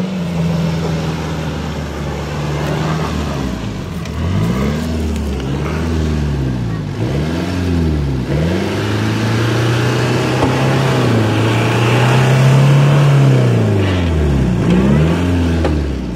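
Jeep Cherokee XJ engine revving up and down again and again as it works through deep mud ruts on a climb, then held at higher revs for a few seconds before easing off near the end.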